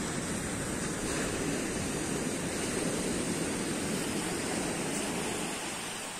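Sea surf washing up a shingle beach: a steady rush of small breaking waves that eases slightly near the end.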